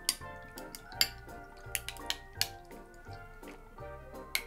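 A cocktail poured from a small can over a large ice cube in a glass, with a few sharp clicks and clinks, under background music with a steady beat.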